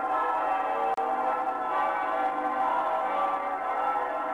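Instrumental introduction of a song, with no singing yet: sustained chords held steady.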